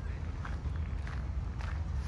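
Footsteps crunching on a gravel garden path at a steady walking pace, about three steps, over a steady low rumble.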